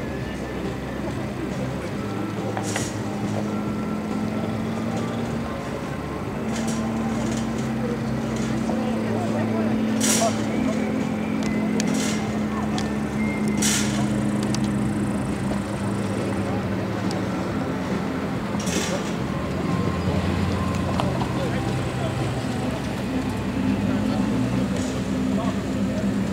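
Car engines running at low speed, a steady hum, with people talking in the background and a few sharp clicks.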